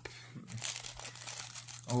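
Hands handling baseball cards: a quick run of light crinkling and rustling ticks that starts about half a second in and stops just before the end.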